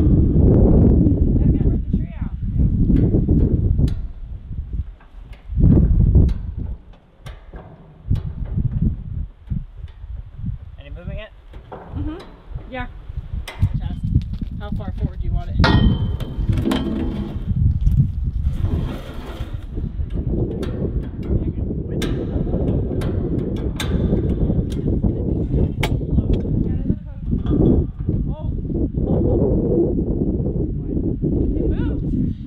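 Hi-Lift jack being worked at the corner of a steel shipping container: a run of sharp metal clicks and clanks over a steady low rumble.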